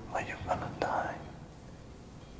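Hushed, whisper-like speech: a few quiet words lasting about a second, near the start.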